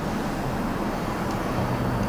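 A steady low background hum with a few held low tones, without clear onsets or breaks.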